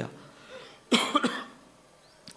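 A man coughs once, close to the microphone, about a second in.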